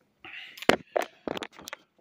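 A short hiss, then a quick run of about five sharp clicks and knocks over a second or so.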